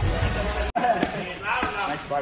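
Gloved punches landing on hand-held striking mitts: a few sharp smacks, with a voice talking over them.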